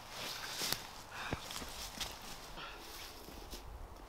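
Footsteps and rustling on snow-dusted dry leaf litter, with several sharp crunches.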